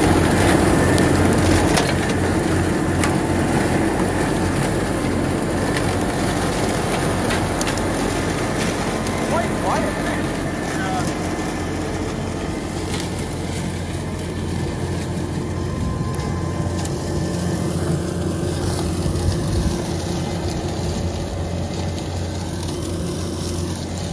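JCB Fastrac tractor running steadily while its rear-mounted Cyclone twin-blade chopper shreds dry sunflower stalks: a steady engine drone under a dense chopping and crunching noise. It eases off gradually as the tractor pulls away.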